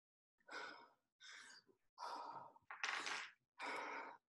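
A person breathing hard in quick, heavy exhales, about five in a row, panting from the effort of a cardio interval.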